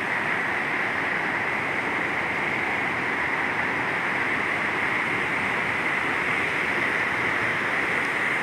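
Floodwater rushing through a breached river embankment: a steady, loud rush of turbulent water.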